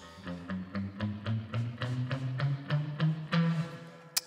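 Electric guitar (a Stratocaster-style solid-body played through a small combo amp) playing a quick run of single picked notes, about five a second, mostly stepping upward in pitch. The run shows the twelve notes of the musical scale.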